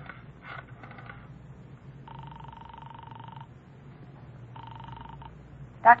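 Telephone call on the line in a 1950s radio-drama sound effect: a few faint clicks, then the ringing tone at the called end buzzes twice, a long ring about two seconds in and a shorter one near the end, before the call is answered.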